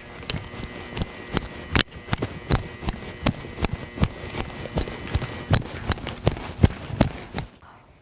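Footsteps of boots on a hard floor at a steady walking pace, about two to three sharp steps a second.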